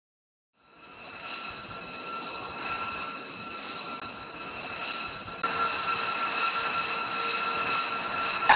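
Jet engines of a parked B-2 Spirit bomber running, a steady high-pitched turbine whine over a rushing hiss. It fades in about half a second in and steps up louder about five and a half seconds in.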